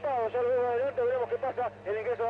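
Only speech: the race commentator's voice talking rapidly through the radio broadcast, over a faint steady low hum.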